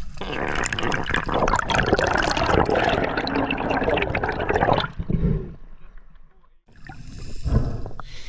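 Water sloshing and bubbling around an underwater camera held just below the surface, a dense crackling wash that fades out about five seconds in and picks up again near the end.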